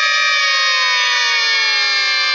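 Several children shouting together in one long, held cry, their voices joining a moment apart and then falling slowly in pitch.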